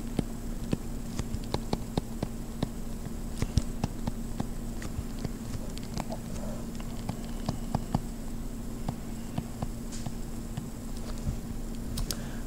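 Stylus tip tapping and ticking on a tablet screen while handwriting: irregular light clicks, several a second, with a steady low hum underneath.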